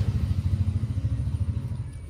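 A low, rapidly pulsing engine-like rumble, like a passing motor vehicle, fading toward the end.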